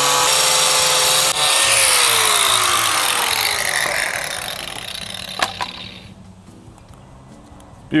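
Corded angle grinder cutting through a plastic cutting board. The disc is released about two seconds in and the motor's whine falls in pitch as it spins down over the next few seconds, with a couple of sharp clicks near the end of the run-down.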